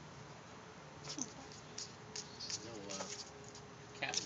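A pet making short, soft pitched calls, one about a second in and a wavering one near three seconds, among scattered light clicks and scratches.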